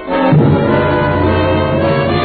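Orchestral cartoon score led by brass. A low brass passage comes in just after the start and is held.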